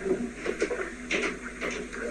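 A man drinking iced coffee from a can in long gulps, with soft swallowing noises, heard through a phone's speaker.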